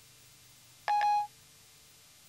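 An iPhone 4S's Siri chime: one short electronic tone about a second in, the phone's signal that it has stopped listening and is processing the spoken request.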